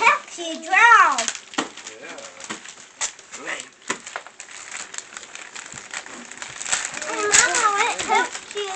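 Christmas wrapping paper being torn and crinkled as a small child unwraps a present, in scattered crackles. A high-pitched child's voice exclaims at the start and again near the end.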